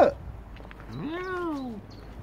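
A domestic cat meowing once, a single drawn-out meow about a second in that rises and then falls in pitch.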